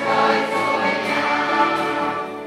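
A children's mixed choir singing, many voices together in sustained notes, with instrumental accompaniment.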